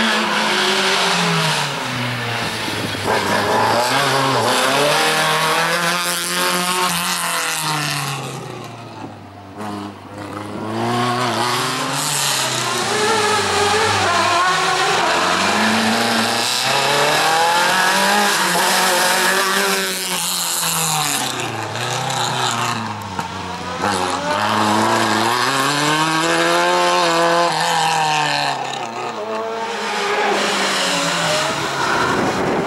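Peugeot 205 rally car's four-cylinder engine revving hard and easing off again and again as it is driven through a cone slalom, the pitch climbing and dropping every few seconds.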